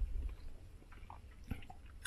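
Faint chewing of a mouthful of paella, with a few scattered small wet clicks and smacks over a low hum.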